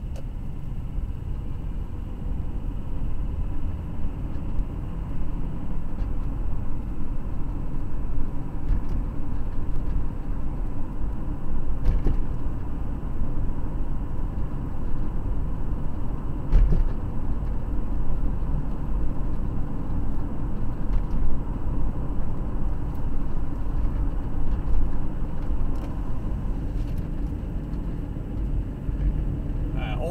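Car driving, heard from inside the cabin: a steady low rumble of tyres and engine, with a couple of faint ticks partway through.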